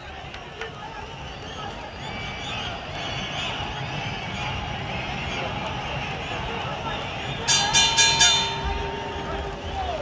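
Arena crowd noise building through the round, then a boxing ring bell struck several times in quick succession about seven and a half seconds in, its tone ringing on: the bell ending the round.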